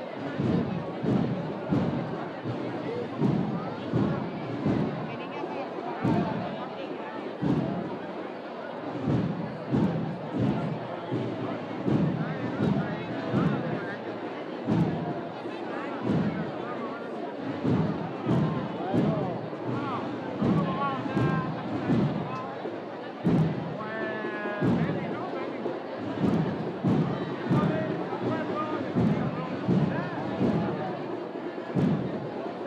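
Procession drums beating a steady march, about two to three low beats a second, over a crowd talking.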